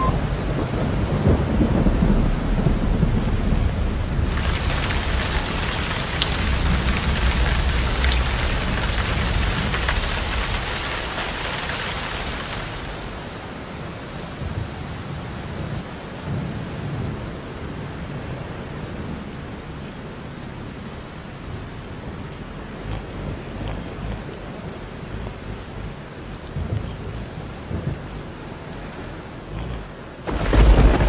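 Low rumbling and scattered knocks of an off-road vehicle jolting along a rough jungle trail, heard through an on-board camera. A loud hissing rush runs from about four to twelve seconds in; then the rumble goes on more quietly.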